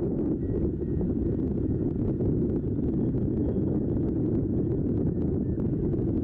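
Steady, even wind buffeting on the microphone, a low rumble with no break.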